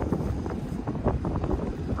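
Wind buffeting the microphone in a steady low rumble, with faint irregular ticks scattered through it.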